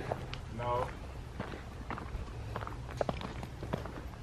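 Footsteps of people walking on a dirt forest trail, a scattering of irregular steps over a low steady rumble.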